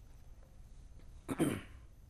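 A single short cough about one and a half seconds in, between stretches of quiet room tone.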